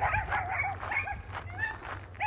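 An animal calling: a quick run of short, high cries, several a second.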